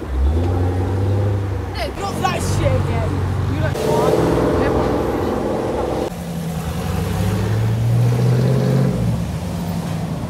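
American cars' engines running and pulling away from a junction one after another, one after the other passing close. The engine sound swells from about four seconds in, and near the end one engine note climbs as a car accelerates.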